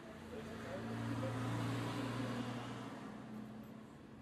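A road vehicle passing by: its engine hum and tyre noise swell up and fade away over about three seconds.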